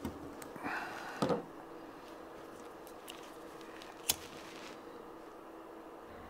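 Pocket knife and needle handled on a wooden workbench: a short scrape just before a second in, then a loud knock, then faint ticks. One sharp click comes about four seconds in, followed by a brief soft hiss.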